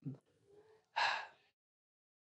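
A man's short, audible breath about a second in.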